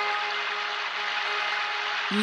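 Steady hiss-like noise, with a faint held musical note fading out in the first second and a half.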